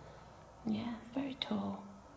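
A person's voice murmuring a few soft, unclear words, starting about two-thirds of a second in.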